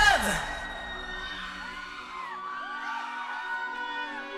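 A pop song's music cuts off right at the start, leaving a studio audience of fans screaming and cheering. Many high shrieks rise and fall over a quiet low held tone.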